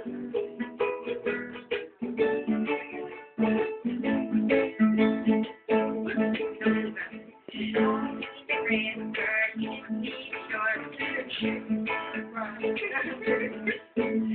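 Ukulele and acoustic guitar strumming chords together in a steady rhythm.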